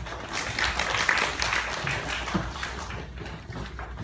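Audience applauding, thinning out after about three seconds.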